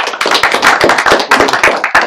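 Audience applauding, many overlapping hand claps.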